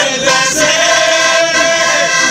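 Group of men singing a traditional Pasquella folk song together, accompanied by a small button accordion and guitar, with a long held note from about half a second in.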